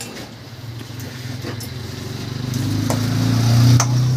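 A motor vehicle's engine passing close by, growing louder over a couple of seconds, loudest near the end, then starting to fade. A few light clinks, as of metal utensils, sound over it.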